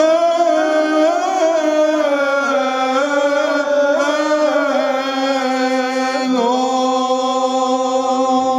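Male voices singing Byzantine chant, led by a bishop. The melody rises and falls over a low note held steady beneath it (the ison).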